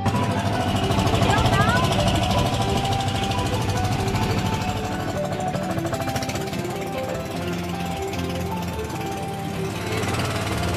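Outrigger boat's engine running steadily with a rapid pulse, under background music.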